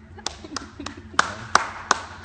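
Hand clapping, starting about a quarter second in and going at roughly three claps a second.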